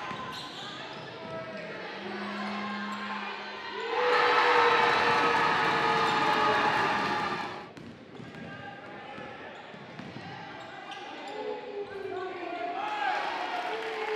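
A basketball being dribbled on a hardwood gym floor, with players' and spectators' voices in the hall. The voices get louder from about four seconds in and drop again near the eight-second mark.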